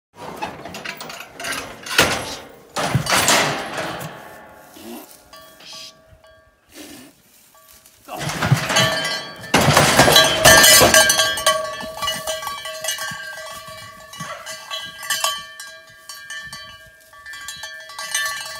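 A cowbell on a cow's collar clanking and ringing as she pushes out of a steel cattle squeeze chute, with several loud metal clangs from the chute early on and about eight to ten seconds in. The bell keeps ringing unevenly as she trots away, fading and swelling with her steps.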